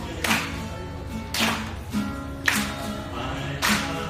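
Acoustic guitar strummed live, a sharp accented strum about once a second with the chord ringing on between strums.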